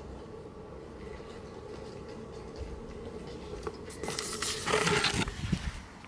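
Casting-kit moulding mix being stirred with a stick in a plastic bucket, a faint low scraping and squishing. From about four seconds in it gives way to louder rustling and knocks as the camera is handled and moved.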